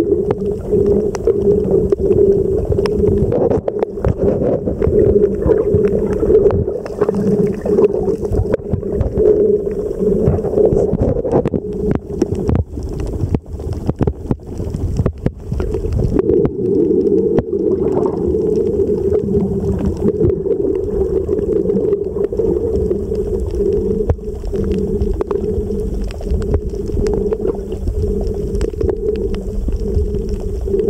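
Muffled underwater sound picked up by a submerged camera: a steady low drone with scattered crackling clicks throughout.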